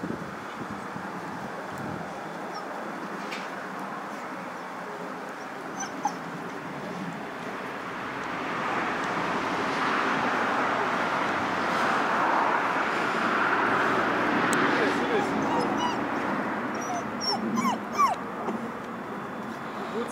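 Puppies whimpering and yipping in short high squeals, clustered near the end, over a steady rushing noise that swells in the middle.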